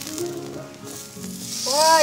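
Beef steak sizzling on a hot gas grill grate, the sizzle swelling louder near the end as the steak is turned over, under background music.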